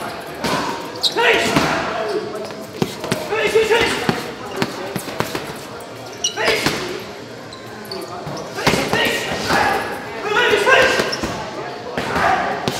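Boxing gloves landing on heavy leather punch bags, sharp irregular thuds in quick combinations, with voices talking in a large echoing gym hall.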